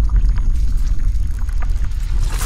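Animated logo-intro sound effect: a loud, deep rumble with scattered crackling clicks over it.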